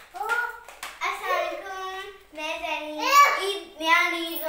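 A young girl's high voice, drawing out long held notes, with a couple of sharp hand taps near the start.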